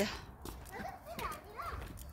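Stroller and kick-scooter wheels rolling on a concrete sidewalk: a low rumble with scattered light clicks.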